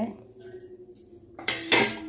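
Stainless steel kitchenware clattering: a short, loud burst of metal-on-metal noise from a steel plate and vessel about a second and a half in.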